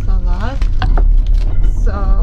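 Steady low rumble of a moving passenger train carriage, heard from inside the compartment, with a few sharp clicks about halfway through as cling film is pulled off a plate of food. A voice speaks briefly at the start and again near the end.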